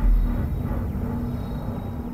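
Soundtrack sound design: a deep low boom right at the start that dies away into a steady low rumble under a held low drone.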